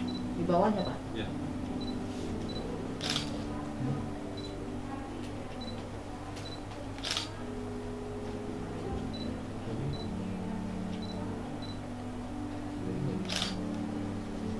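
A camera shutter clicks three times, a few seconds apart, over soft background music of long held notes.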